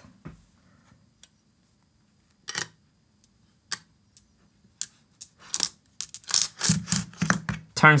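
Steel marbles clicking as they pass one by one through a hand-held marble-gate prototype: single sharp clicks every second or so, coming closer together after about five seconds. The marbles are rolling freely now that the correct, thinner tube is fitted. A voice comes in near the end.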